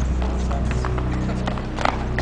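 Tennis ball struck by a racket and bouncing on a hard court: sharp knocks at the start and a cluster about 1.8 s in, over a steady background of music.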